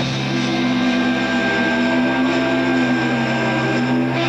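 Electric guitar playing a sustained drone, several notes held steady without a drumbeat.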